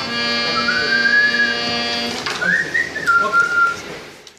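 Harmonium holding a chord for about two seconds, with a person whistling a high note over it. After the chord stops, the whistling goes on alone, rising and then falling in pitch.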